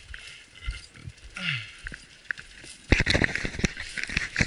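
Crunching footsteps in dry fallen leaves, a dense run of sharp crackles starting about three seconds in.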